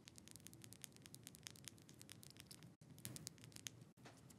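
Near silence: quiet room tone with faint, irregular small clicks.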